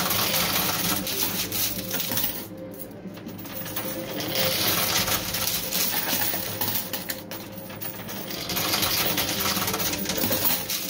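Quarters clattering and clinking as they drop into a coin pusher machine and slide across its pusher shelves. The dense metallic rattle swells and eases every few seconds over a steady background hum.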